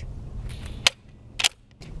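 A few sharp clicks from hands handling a scoped Marlin .22 rifle, the loudest about a second in, over a low rumble in the first second.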